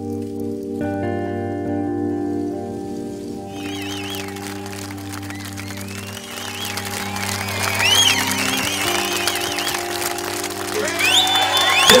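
Slow background music with long held chords. From about three and a half seconds in, a crowd cheering and clapping rises underneath and is loudest near the end.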